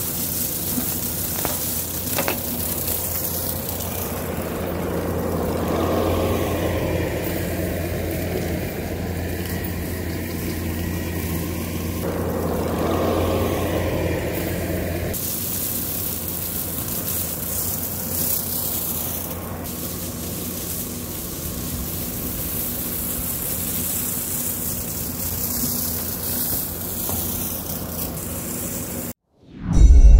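Bobcat T650 compact track loader's diesel engine running hard under load while its skid-steer brush cutter mows dry weeds: a steady machine drone with mowing noise. The sound cuts off just before the end.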